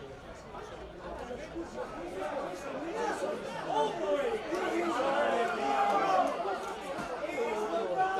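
Several men's voices talking and calling over one another on a football pitch, players and bench staff, getting louder toward the middle.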